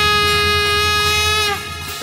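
Conch shell (shankh) blown in one long steady note that sags in pitch and dies away about one and a half seconds in.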